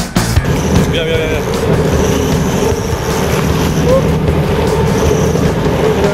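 A fishing boat's engine running steadily under way, with wind and rushing water from the wake, and brief voices on board. A rock music track cuts off at the very start.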